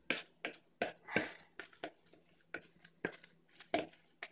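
Wooden spoon stirring a thick mushroom-and-breadcrumb burger mixture in a plastic bowl: a string of soft, irregular short clicks.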